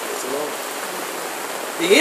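A steady rushing hiss fills a pause in a man's speech, with a faint murmured word about a quarter second in; he starts speaking again near the end.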